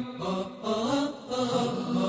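Arabic nasheed chanted by a solo voice over the pictures, a devotional verse sung between lines, softer here with two short dips before the next line begins.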